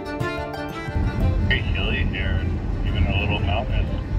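Celtic fiddle music stops about a second in, giving way to the steady low rumble of a car driving on a highway, heard from inside the cabin, with some talking over it.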